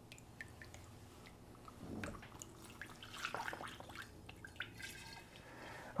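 Faint liquid sounds of limoncello being scooped with a glass measuring cup and poured through a funnel into a glass bottle, with drips and small clinks now and then.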